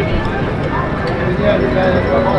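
Casino floor din: background chatter of many voices, with repeated light clicks from the slot machines during a reel spin.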